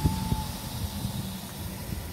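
Low, steady outdoor street rumble with a faint hum and an even hiss, typical of road traffic picked up on a phone microphone. A faint short tone sounds at the very start.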